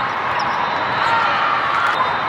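Busy indoor volleyball hall: a steady din of crowd chatter, with sneakers squeaking on the court several times and the odd thud of a ball being played.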